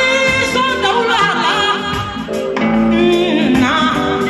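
Live band music with a singer: the vocal line bends and wavers in ornamented runs over bass guitar and band accompaniment.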